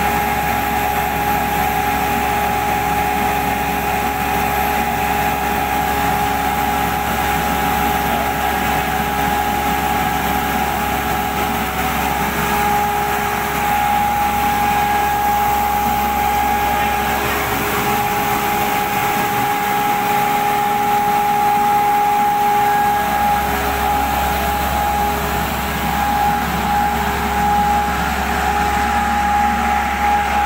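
Running foundry machinery: a steady drone with a constant high-pitched whine over a deep hum. The deep hum drops away for a few seconds past the middle, then returns.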